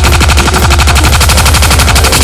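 Live electronic drum and bass music: a very rapid drum-machine roll of evenly repeated hits over a loud, sustained deep bass.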